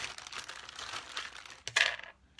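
Crinkling and rustling of plastic as a set of round clay cutters is handled and sorted through, with a louder rustle near the end.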